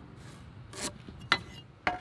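A pencil scratching a short line across a wooden board against a speed square, followed by two sharp clicks.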